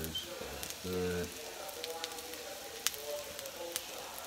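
Black bean burger patties sizzling as they fry in a hot pan, a steady hiss broken by a few sharp crackles.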